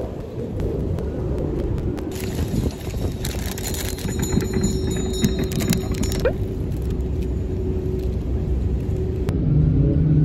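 Steady low rumble of city street traffic with a steady hum that stops near the end. For a few seconds in the middle a higher hissing noise joins in.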